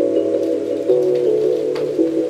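Soft ambient background music of held, chime-like notes that change in steps.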